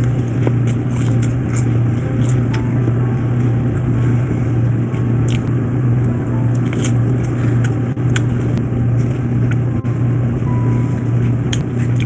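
A person chewing a mouthful of breaded food, with short wet mouth clicks and smacks scattered throughout, over a loud steady low hum.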